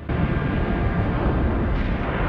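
Deep, steady rumble of a spaceship sound effect from a sci-fi TV soundtrack, starting abruptly.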